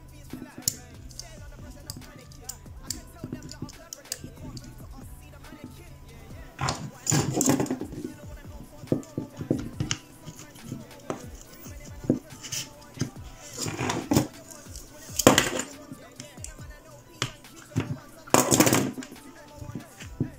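Background music playing under the handling noise of a hot glue gun being taken apart: small clicks and taps throughout, and a few louder bursts of scraping and rustling in the second half, the last one near the end.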